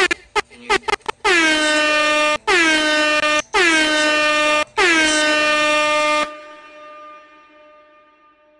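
Air horn sound effect cued on the podcast: a quick run of short stabs, then four long blasts, each bending down in pitch as it starts. It cuts off about six seconds in, leaving a faint fading ring.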